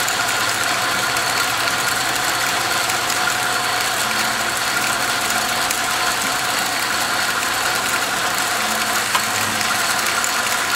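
South Bend 9-inch metal lathe running under its 1/3 HP electric motor and belt drive: a steady, even mechanical whir. One sharp click comes near the end.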